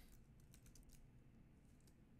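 Faint computer keyboard typing: a few soft, scattered key clicks over near silence.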